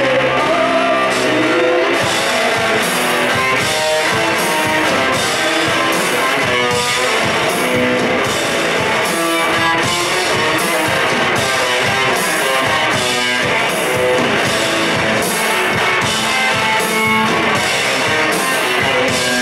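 A protopunk garage-blues rock band playing live and loud: electric guitars over drums, with cymbal hits keeping a steady beat.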